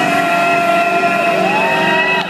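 Loud electronic music from the PA: held, siren-like synth tones, one sliding up in pitch near the end.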